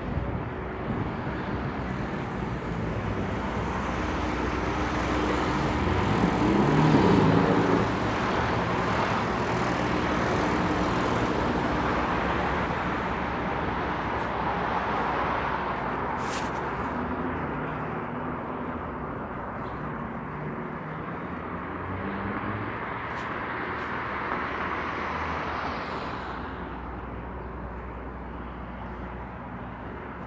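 City street traffic: a steady hum of cars driving past. One vehicle passes close by and is loudest about seven seconds in.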